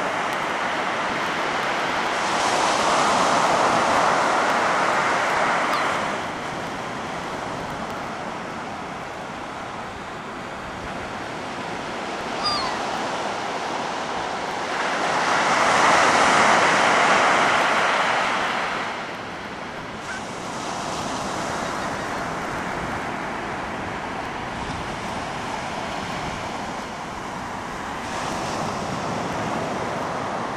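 Ocean surf breaking on a sandy beach: a continuous rush of water that swells loudly twice, a few seconds in and again about halfway, as bigger waves break, with smaller swells after.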